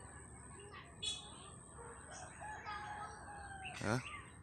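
A rooster crowing faintly: a short call about a second in, then a longer held crow.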